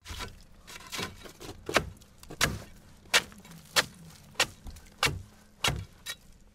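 A regular series of short, sharp taps or crunches, about three every two seconds, beginning in earnest about a second and a half in, over a faint low hum.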